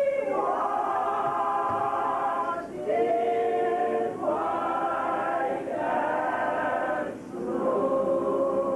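Mixed men's and women's gospel choir singing a cappella, without instruments, in a run of long held chords, about five phrases each broken by a short breath.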